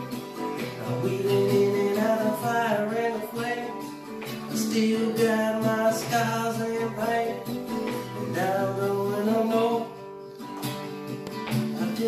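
Acoustic guitar strummed in a steady rhythm, with a man's voice carrying a melody over parts of it; the playing thins briefly about ten seconds in.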